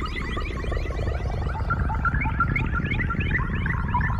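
Electronic background score sting: rapid warbling synthesizer chirps over a low rumble.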